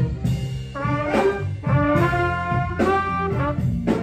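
Jazz band music: a trumpet plays a phrase of several sustained notes over a low band accompaniment.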